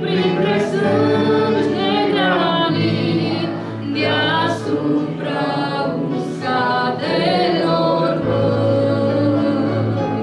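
A woman singing a Romanian hymn solo into a handheld microphone, holding long notes with vibrato, over sustained low accompaniment notes that change pitch every few seconds.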